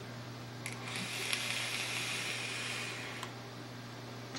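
An Innokin Plex mesh-coil vape tank being fired at 60 watts during a long inhale: a small click, then a steady hiss of air drawn through the tank as the coil vaporizes e-juice for about two and a half seconds, ending with another click.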